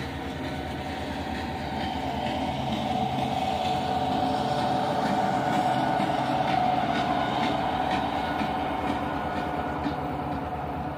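Freight train passing close by, its wheels clicking over the rail joints as boxcars roll past. A CSX diesel locomotive at the rear of the train follows, and the sound is loudest about five to seven seconds in.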